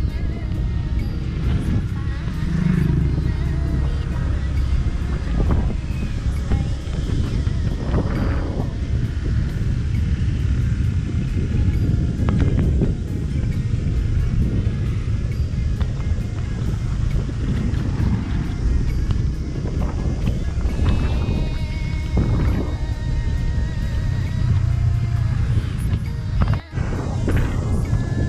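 Steady wind and road rumble from a motorbike moving along a rough road, with music playing underneath.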